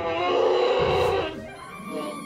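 A man's cry of pain lasting about a second, over background music that carries on quieter after it.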